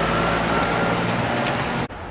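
Heavy truck running close by, a steady engine drone with a faint high whine, as a car-transporter rig moves past. The sound cuts off suddenly near the end.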